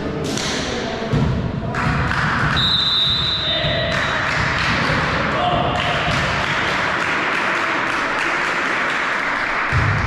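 Players and spectators calling and chattering in a sports hall during a youth volleyball rally break, with a steady high referee's whistle blast about two and a half seconds in, lasting about a second and a half: the signal to serve.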